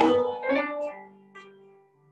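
Upright bass played pizzicato, soloed through studio monitors so that it is heard mostly on its own. A few plucked notes at the start and about half a second in ring out and fade away.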